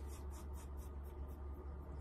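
Faint soft rustling and light brushing as a pianist's hands and clothing settle at the piano keyboard before she plays, over a steady low hum.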